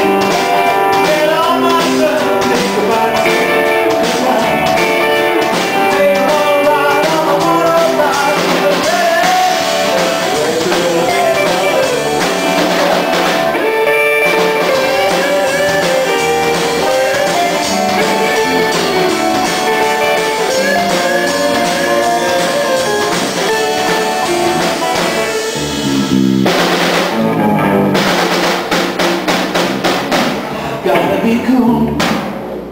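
Live rock band playing an instrumental passage: electric guitar carrying a bending melody line over a drum kit keeping a steady beat on the cymbals, loud and full. Near the end the band changes, with a crash.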